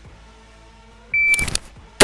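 Electronic shot-timer start beep, one short high tone about a second in, followed by a brief rustle as the carbine is snapped up from high ready, and the first rifle shot right at the end, just under a second after the beep.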